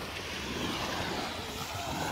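Small waves breaking gently on a sandy shore: a steady, even wash of surf, with a low rumble of light wind on the microphone.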